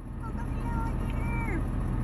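A steady low mechanical hum with faint wavering voices over it.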